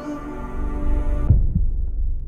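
Ballad backing track: a held chord rings and then stops about a second and a half in, leaving a couple of deep bass thuds over a low rumble, a break before the next sung line.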